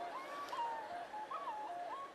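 A soft melody on a flute-like wind instrument: a few short, pure notes with slides up and down between them, much quieter than the playing just before.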